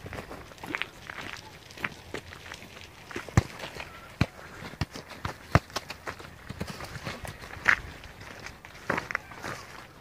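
Footsteps on a gravel path, irregular steps with a few sharper clicks.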